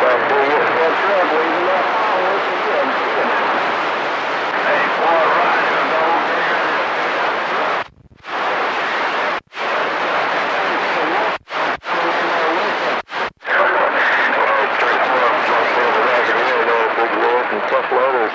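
CB radio receiver tuned to channel 28 (27.285 MHz) passing skip signals from distant stations: unintelligible voices mixed with heavy static. Around the middle the audio cuts out sharply several times for a fraction of a second, as carriers drop between transmissions.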